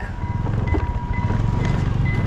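Motor scooter riding over a railway level crossing, with a low engine and road rumble. Over it the crossing's electronic warning signal sounds a steady high tone and a higher beep that repeats about twice a second, warning that a train is coming.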